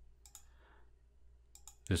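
Two computer mouse clicks, one about a quarter second in and one near the end, each a quick press-and-release.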